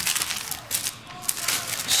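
Plastic bubble mailer and paper wrapping rustling and crinkling as they are handled, a string of short crackles.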